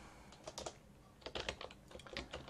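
Faint keystrokes on a computer keyboard: a few quick key clicks about half a second in, a short pause, then another run of keystrokes in the second half as text is deleted and retyped at a terminal prompt.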